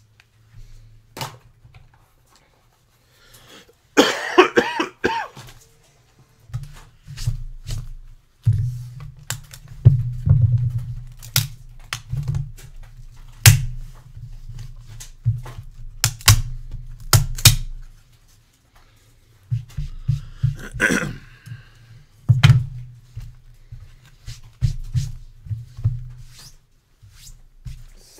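Hard plastic PSA graded-card holder being pried and cracked open with pliers and a screwdriver: a long run of sharp snaps and clicks of the plastic, with handling thumps on the desk. A cough breaks in about four seconds in.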